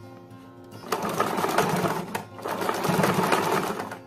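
Domestic electric sewing machine stitching through fabric in two quick runs. It starts about a second in, pauses briefly in the middle, and stops just before the end.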